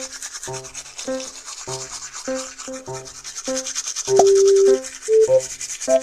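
Cartoon sound effect of toothbrushes scrubbing teeth, a steady rapid scratchy brushing. Under it runs a simple music beat of short notes a little over half a second apart, with one longer held note just past the middle.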